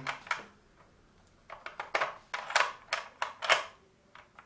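Plastic Rush Hour car and truck pieces clicking as they are slid and knocked along the plastic puzzle tray: one click near the start, then a run of light clacks through the second half.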